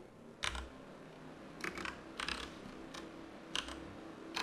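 Computer keyboard being typed on: a few keystroke clicks in small groups spaced about a second apart.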